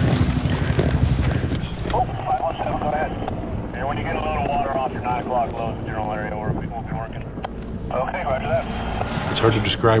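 A helicopter's rotor and engine running for about the first two seconds. Then voice chatter over a handheld radio, thin-sounding, runs over a continuing low rumble.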